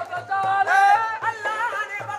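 Devotional song: a voice singing long, sliding, ornamented lines over a steady hand-drum beat.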